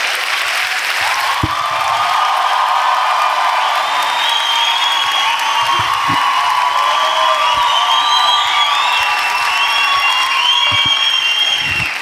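Theatre audience applauding steadily after a stand-up comedy punchline, with music playing over the applause.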